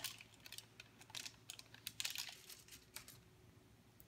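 Faint, scattered light clicks and crinkles of plastic lollipop sticks and baking paper being handled. The clicks stop for the last second or so.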